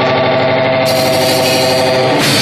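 Live band holding one loud, sustained, effects-laden electric chord with no drum strikes, a steady drone of stacked tones. A bright hiss joins it about a second in.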